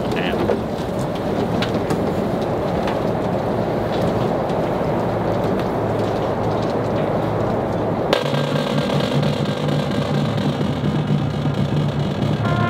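A stadium crowd murmuring over an even outdoor noise for about eight seconds, then a marching band's brass comes in suddenly with a sustained low chord and holds it.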